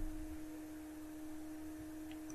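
A steady, faint tone at one low pitch with a fainter overtone above it, holding unchanged over low background noise.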